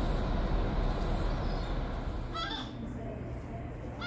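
A steady low rumble, then a gull calling once, a short harsh call, about halfway through.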